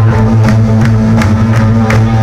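Rock band playing live at high volume: held low guitar and bass notes under regular cymbal hits, about three a second.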